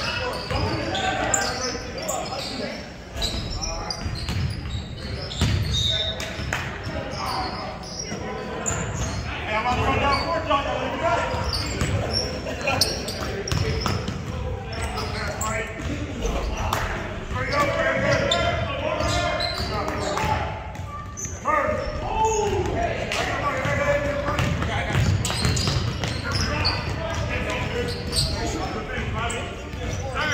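Basketball bouncing on a hardwood gym floor during a full-court game, the bounces echoing in a large gym, with players' voices and shouts throughout.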